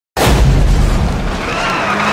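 A loud boom that starts suddenly just after the opening, its deep rumble running on.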